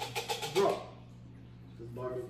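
A voice saying "drop", over a quick patter of small clicks in the first second, then quiet room tone with a low steady hum.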